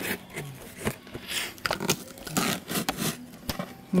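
Plastic stretch wrap and packing tape being pulled and peeled off a cardboard box by hand: irregular rustling and scraping in short bursts, with a few sharp clicks.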